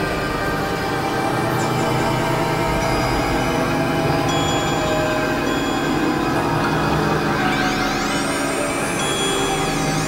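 Experimental electronic synthesizer drone music: many held tones layered into a steady, dense drone. Late on, a cluster of high tones sweeps upward in pitch, holds, and bends back down near the end.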